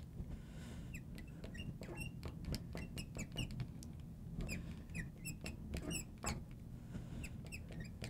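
Faint, short squeaks of a marker writing on a glass lightboard, coming in quick, irregular strokes.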